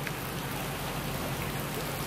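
Steady hiss of light rain.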